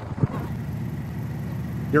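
Car engine idling steadily, an even low hum that sets in just after a short click near the start.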